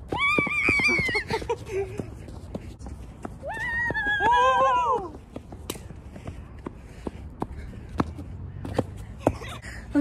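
Two high-pitched wordless yells from people sprinting round the bases, the second one sliding down in pitch at its end, with scattered sharp taps of running footfalls on the infield dirt.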